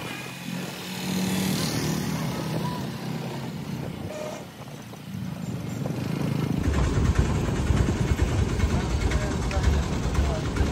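Auto-rickshaw engine running steadily while riding along a road, with road noise. About two-thirds of the way through, a louder, rougher low rumble takes over.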